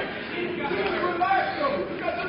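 Indistinct voices talking, more than one person, with no clear words.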